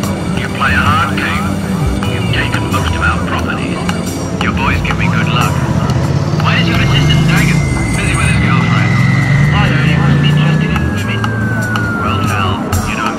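Night street ambience in a busy city centre: people's voices and passing traffic. From about halfway through, a single high whine holds steady and then slowly sinks in pitch toward the end.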